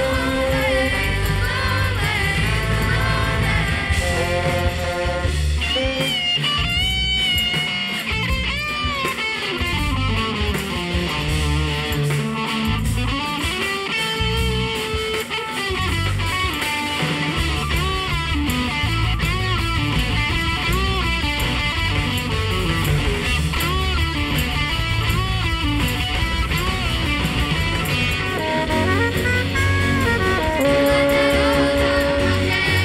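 Live rock band playing an instrumental passage: an electric guitar lead with bent and wavering notes over drums and bass.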